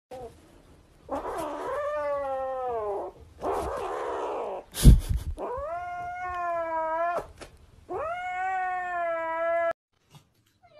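Kitten giving long, drawn-out yowls, three of them, with a hissing growl between the first and second, while it guards a plush toy from a hand that is trying to take it. A single sharp thump comes about halfway through.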